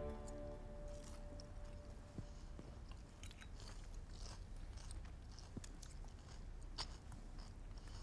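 Faint eating sounds: a knife and fork clinking a few times against a ceramic plate, and chewing.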